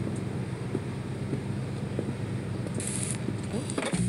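Steady low rumble of idling car engines with some wind noise and faint crackles, from the music video's soundtrack. A brief hiss comes in about three seconds in, and the sound cuts off at the end as the video finishes.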